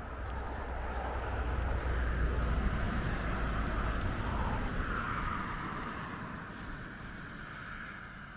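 Distant vehicle noise outdoors: a steady low rumble with a wash of engine and road noise that swells over the first few seconds and then slowly fades.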